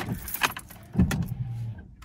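Ignition key of a Ford Escort turned to the on position: a sharp click with keys jangling on the ring, then a brief low hum starting about a second in as the electrics come on.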